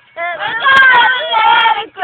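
Voices singing loud, held notes without clear words, with more than one pitch at once and a short slide down near the start.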